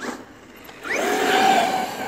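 Traxxas X-Maxx electric RC monster truck accelerating across grass: a steady whine from its brushless motor and drivetrain over hiss from the tyres. The burst starts about a second in and lasts about a second.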